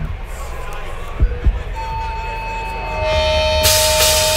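Steady amplifier hum with two low thumps. Then sustained guitar feedback tones ring out from about halfway. Near the end the band comes in loud with distorted guitars and cymbals.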